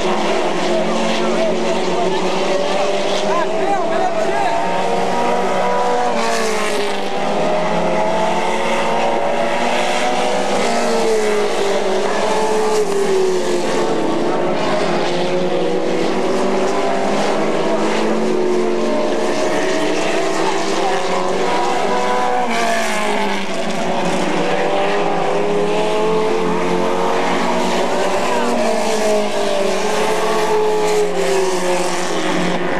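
A pack of Pro Stock race cars running laps on a dirt oval, several engines at once, their notes rising along the straights and falling as the drivers lift for the turns, over and over.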